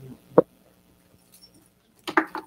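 A single sharp bump on a microphone about half a second in, the kind of knock made when the mic is handled, with faint handling noise around it.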